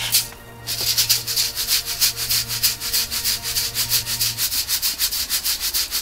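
Akadama bonsai soil granules poured from a scoop into a stainless steel sieve, then shaken in it: a rhythmic gritty rattle of about five shakes a second as the fine dust is sifted out.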